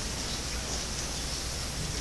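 Steady hiss with a low hum underneath, the background noise of an old recording during a pause between speakers; no distinct event.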